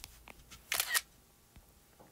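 iPad screenshot camera-shutter sound: a quick double click about three-quarters of a second in.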